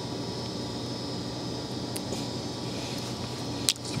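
Steady fan-like background hum, with a faint click about two seconds in and a sharper click near the end: fly-tying scissors snipping off the excess partridge feather stem behind the bead.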